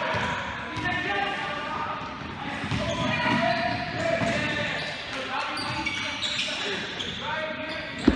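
Basketballs bouncing repeatedly and irregularly on an indoor court floor, echoing in a large gym hall, with background voices of players and coaches talking.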